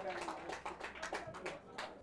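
Faint football-pitch ambience between commentary phrases: distant voices with a series of scattered sharp clicks.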